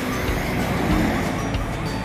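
Road traffic: a car going by on the highway, with background music underneath.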